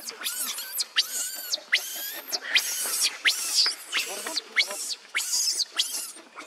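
Infant macaque screaming in a rapid series of shrill cries, about two a second, many falling in pitch: a weaning tantrum, the baby crying because its mother refuses to let it nurse.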